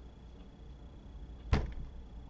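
A single sharp knock about one and a half seconds in, dying away quickly, over a faint steady hum.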